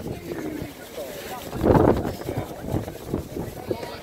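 Indistinct voices and shouts of players and spectators, with wind noise on the phone's microphone and a louder burst a little before the middle.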